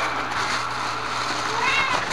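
Plastic bubble-wrap packaging rustling steadily as a power pack is pulled out of it, over a low steady hum. Near the end comes a short high-pitched sound that rises and falls.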